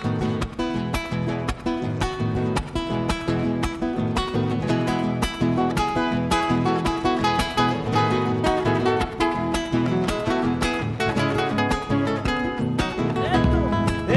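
Acoustic guitar strumming the lively instrumental introduction of a chacarera, an Argentine folk rhythm, with quick, even strum strokes.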